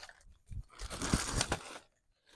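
Rustling and crinkling of items and packaging being rummaged through on a storage shelf, starting about half a second in and stopping just before the end.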